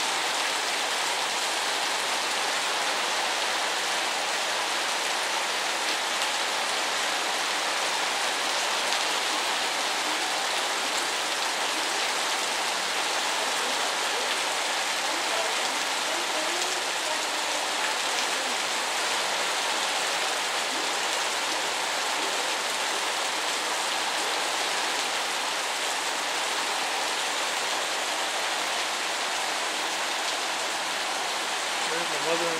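Heavy rain coming down steadily on a porch roof and the yard around it, an even hiss that holds at the same level throughout.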